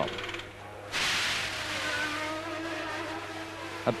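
Pit-lane sound during the Benetton F1 car's refuelling stop. About a second in, a sudden rush of noise starts and holds steady, with a low hum and faint engine tones under it, as the refuelling fuel ignites.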